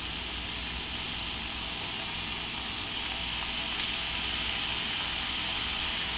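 Raw chorizo pieces sizzling steadily in a hot cast iron skillet, growing a little louder about halfway through.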